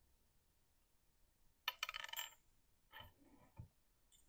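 Small metal pieces clinking and rattling briefly about two seconds in, then a couple of faint clicks, as a small metal stylus tip is handled and fitted onto a hot tool; otherwise near silence.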